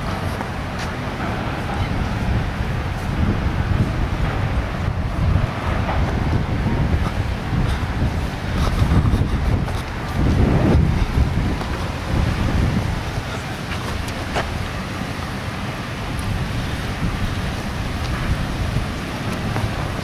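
Wind buffeting the microphone: a low, uneven rumble that swells in gusts, strongest about ten seconds in.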